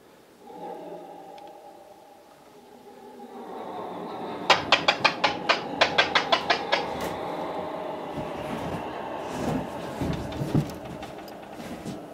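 Handheld radio transceiver making noise: a steady droning tone, then a fast run of about a dozen sharp clicks, some six a second, over a couple of seconds, giving way to crackling hiss.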